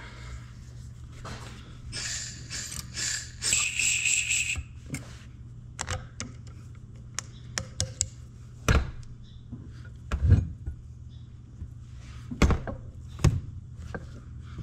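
Hand work on a hydraulic cylinder's steel rod and barrel during reassembly. A scraping rub comes a couple of seconds in, then light metal clicks and several dull thumps as parts and tools are handled.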